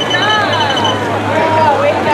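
Several people's voices talking over one another, with a steady low hum underneath. A high steady tone sounds until about halfway through, then stops.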